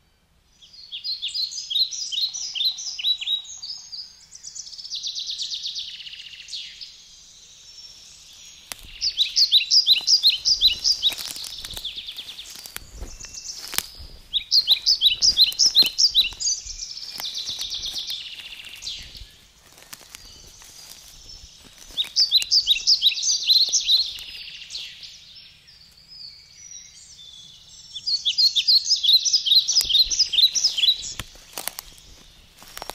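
A songbird sings the same short phrase of rapid high notes over and over, about every six seconds, with a buzzier trill between some of the phrases. Through the middle come crunching steps in dry leaf litter.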